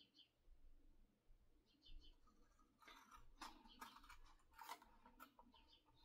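Near silence with faint paper handling: soft rustles and light scrapes of paper being worked, busier in the second half.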